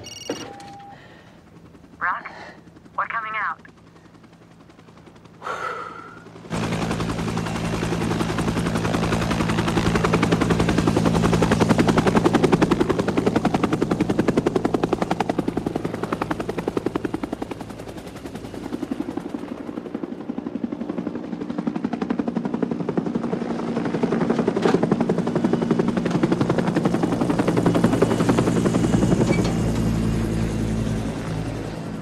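Helicopter flying close by: the rapid chop of its rotor over a steady low hum starts suddenly about six seconds in, grows louder, eases a little past the middle and swells again. A few short sounds come before it.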